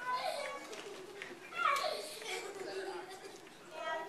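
Children's voices talking and calling out, with one voice louder a little before halfway through.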